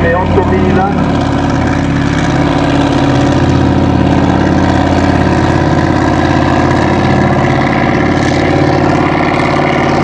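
BPM 8000 cc V8 racing engine of a Celli three-point hydroplane running hard at speed, a mighty roar that holds steady.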